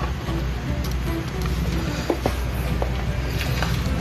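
Steady low background hum with a few light clicks and taps, as the small plastic LED controller module is handled and set down on a wooden bench.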